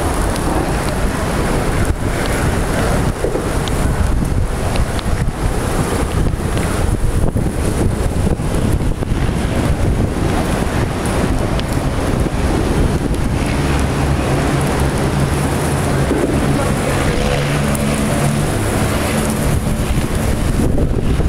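Wind buffeting the microphone over the steady rumble of longboard wheels rolling on asphalt while skating along, with a low hum joining in past the middle.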